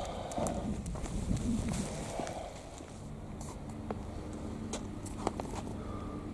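Footsteps on a tarmac path with scattered light clicks and scuffs. From about halfway a faint steady hum comes in underneath.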